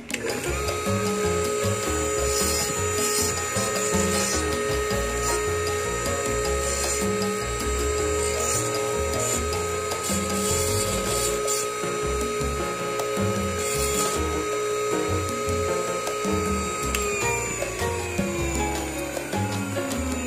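Dental lab bench lathe running with a steady whine while a mounted stone bur grinds denture teeth, with occasional scratchy bursts of grinding. From about 17 s on, the motor's pitch slides steadily down as it winds down. Background music with a beat plays throughout.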